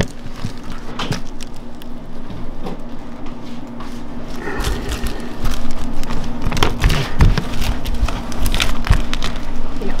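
Thin, brittle sheet of peanut brittle cracking and snapping in many small sharp cracks as it is stretched and broken by gloved hands on a stainless steel counter, over a steady low hum. From about halfway there are heavier knocks and rumbling as the hands press the candy against the metal counter.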